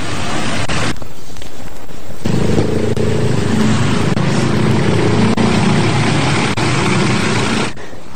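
Road traffic: trucks and other motor vehicles running past close by, the engine rumble growing heavier about two seconds in.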